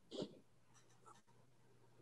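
Near silence: the quiet room tone of a video-call microphone. There is a short spoken "hey" just after the start, then a few faint soft scratches about a second in.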